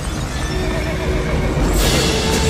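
A horse whinnying, its call wavering and falling, over a loud low rumble, with a short noisy burst near the end.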